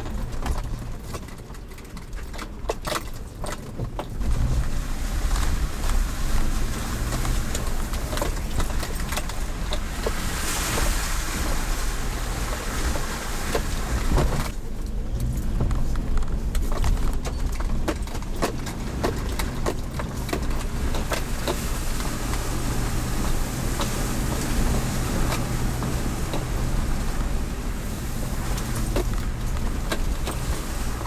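A 4x4's engine running at low revs as it crawls over a rocky dirt track, heard from inside the cabin, with frequent knocks and rattles from the body and suspension over the bumps. The engine gets louder about four seconds in.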